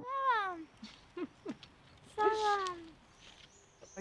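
A child's wordless vocalising: two high-pitched calls that fall in pitch, one right at the start and a second a little past two seconds in.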